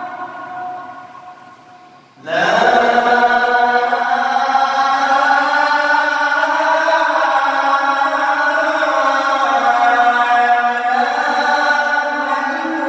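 A man calling the adhan (Islamic call to prayer) into a microphone in a high, ringing register. The previous phrase dies away over the first two seconds. About two seconds in he starts the closing 'La ilaha illallah' as one long held line, with slow ornamental bends, that carries on past the end.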